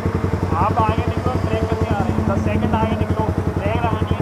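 Motorcycle engines idling at a standstill, a steady rapid even pulsing that holds without revving.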